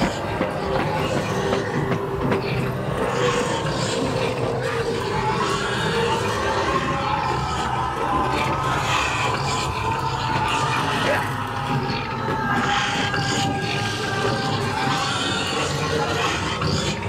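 Haunted-maze soundtrack playing loudly through the attraction's speakers: steady droning tones held over a dense, rumbling noise bed, with scattered sharper hits.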